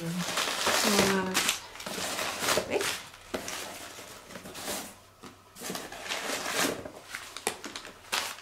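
Packaging rustling and crinkling in uneven bursts as a parcel is unpacked by hand.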